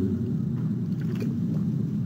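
Steady low rumble and hum of room noise in a lecture-hall recording, with no speech.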